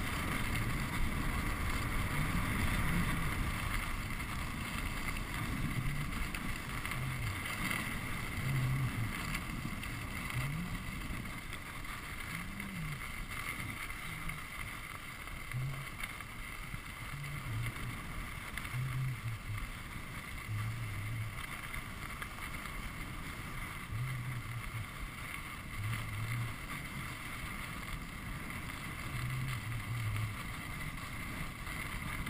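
Steady rush of wind and skis sliding over packed snow, picked up by a chest-mounted GoPro HD Hero camera during a fast downhill ski run.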